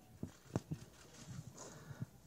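A quiet pause with a few faint, sharp clicks and soft knocks, the clearest about half a second in.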